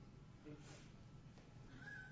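Near silence: quiet room tone, with two brief, faint voice sounds, one about half a second in and one near the end.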